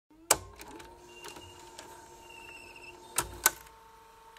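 A series of sharp mechanical clicks over a faint steady hum, with one loud click near the start and two more about three seconds in.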